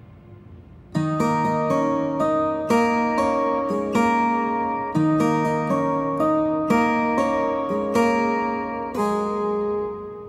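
Guitar played with a pick: a melodic phrase of clean, ringing plucked notes, starting about a second in and going on to the end.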